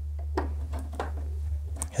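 A few faint clicks of a USB cable being plugged into a projector's port, over a steady low hum.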